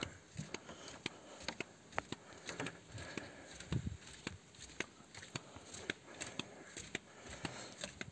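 Faint, irregular light clicks and taps: footsteps on a wooden boardwalk mixed with handling noise from the phone, over a quiet outdoor background.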